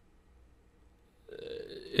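Near silence, then about a second and a half in, a man's low, drawn-out vocal sound that runs straight into speech.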